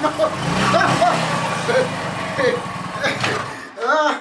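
Small motorcycle engine running at low speed as the bike rolls in, then cutting out about three and a half seconds in, with voices over it.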